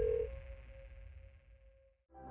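Closing sound design of a film trailer fading out. A steady electronic tone cuts off a fraction of a second in, leaving a fainter, higher steady tone and a low rumble that die away.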